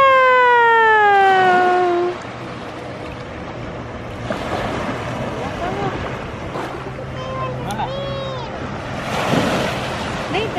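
A loud, high voiced cry at the start, held for about two seconds and falling in pitch. It is followed by small waves washing over sand, a few short voice sounds, and a louder wash of surf coming in near the end.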